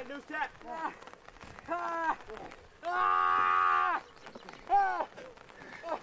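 Wordless human shouts and yells: several short rising-and-falling yells, and one long held yell about three seconds in, the loudest sound.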